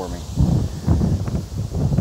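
Wind blowing across the microphone, an uneven low rumble that rises and falls in gusts.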